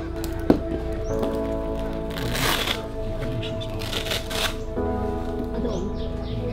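Velcro of a blood-pressure arm cuff being torn open, two short ripping sounds about a second and a half apart, over steady background music.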